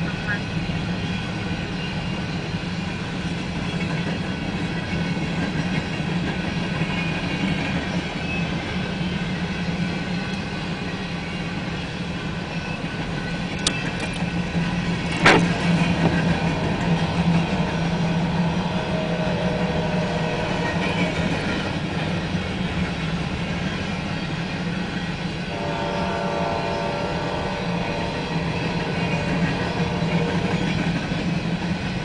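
Empty covered hopper cars of a freight train rolling past, a steady rumble of wheels on rail, with two sharp clicks about halfway through and a faint steady tone near the end.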